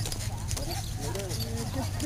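Footsteps of people and a dog walking on an asphalt road, sharp scattered clicks, with distant chatter from other walkers over a steady low hum.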